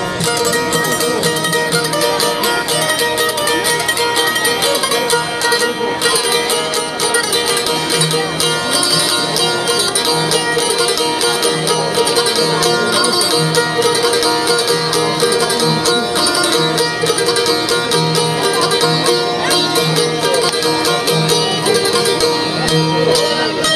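Two çiftelis, Albanian long-necked two-string lutes, playing an instrumental folk tune: quick plucked notes over a steady held drone note.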